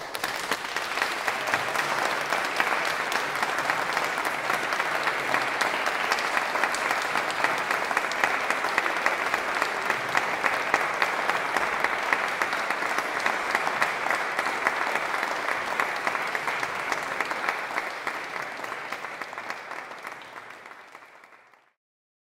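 Audience applauding: dense, steady clapping that fades away over the last few seconds.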